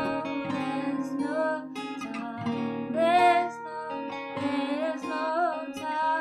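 Acoustic guitar being strummed in a steady accompaniment, with a woman's voice singing sustained, wavering notes over it.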